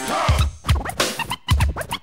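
Turntable scratching over a hip-hop beat: quick rising and falling pitch glides of a record being scratched back and forth, with deep bass-drum hits underneath.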